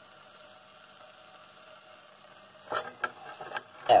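Faint steady hum, then, from about three seconds in, several clinks and scrapes of a metal spoon against a stainless-steel pot as sugar and water are stirred over the heat.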